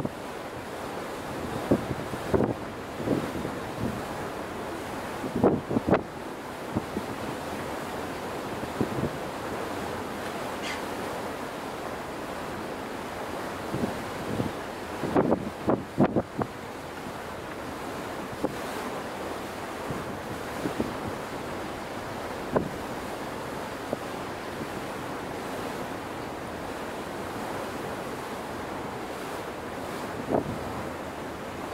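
Wind buffeting the microphone in gusts over a steady rush of open sea water, heard from the deck of a moving ship. The strongest gusts come about two, six and fifteen seconds in.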